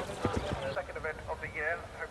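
A galloping horse's hoofbeats on turf, a few dull thuds that stop about half a second in, followed by an event commentator speaking.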